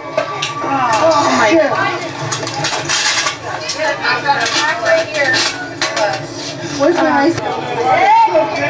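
Indistinct voices of onlookers chattering, with a few sharp clinks and knocks in among them.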